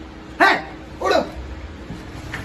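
A dog barking twice, two short calls a little over half a second apart.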